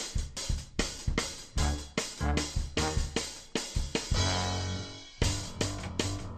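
Background music with a drum-kit beat, two to three hits a second. About four seconds in the drums give way to a held low note, then stop briefly just after five seconds before the beat returns.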